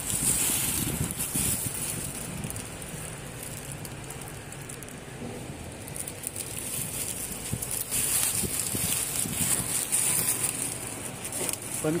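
Clear plastic protective sheeting over a seat crinkling and rustling as it is handled, in spells in the first second or so and again about two-thirds of the way through.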